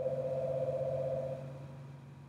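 Mobile phone ringing with an incoming call: a steady electronic ring tone that fades away after about a second and a half as the ringer is turned down.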